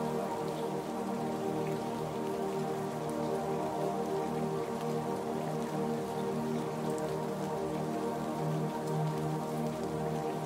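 Slow ambient new-age music of soft held chords with no beat, with steady rain pattering underneath.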